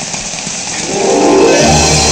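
Steady rain hiss, then a film score swells in about a second in with sustained held notes, and a low bass note enters near the end.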